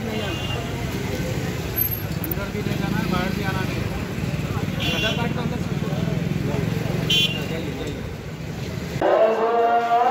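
Street traffic noise with people talking nearby, and two short high beeps about five and seven seconds in. Music begins near the end.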